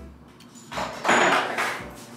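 A loud crashing sound, starting under a second in and lasting about a second.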